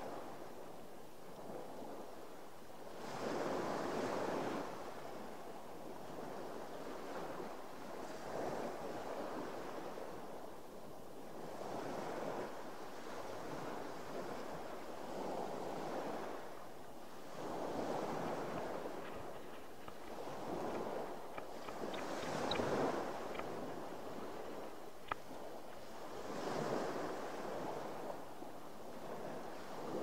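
Sea waves washing past a boat, swelling and fading every few seconds, with a few faint clicks in the second half.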